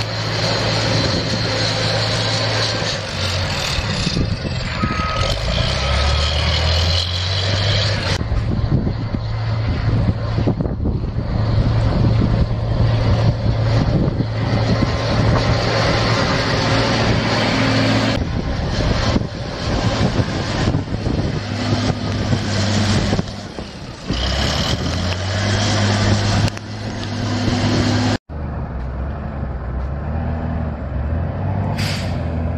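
A John Deere 644G wheel loader's diesel engine running steadily as it pushes snow with a box plow. Two short reverse-alarm beeps sound about five seconds in.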